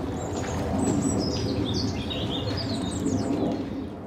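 Asian small-clawed otters chirping: a run of short, high-pitched squeaky chirps over a steady low rumble, fading out at the end.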